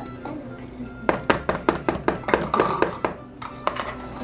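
A spatula knocking and scraping against a plastic mixing bowl while stirring sticky Rice Krispie treat mixture: a quick, irregular run of sharp knocks, several a second, starting about a second in. Background music plays underneath.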